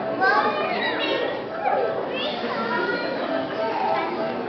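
Young children talking and calling out over one another in a large hall, with high rising and falling exclamations.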